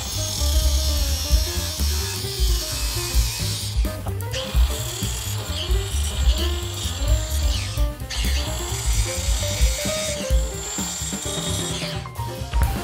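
Electric angle grinder with a cut-off disc cutting a metal solar-panel mounting bracket to length, in three passes that break off briefly about 4 and 8 seconds in. Background music plays throughout.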